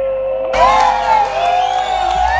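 A live band holds a long sustained closing note. About half a second in, the audience breaks into cheering and whoops over it.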